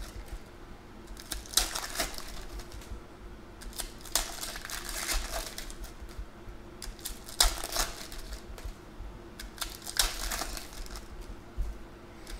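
Foil trading-card pack wrappers crinkling and tearing as packs are opened, with the clicks and slaps of cards being handled and stacked. The rustling comes in bursts every few seconds.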